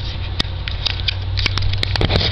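Scattered light clicks and scratches of handling a cardboard shipping box, over a steady low hum.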